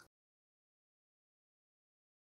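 Silence: the sound track is completely blank, with no room tone.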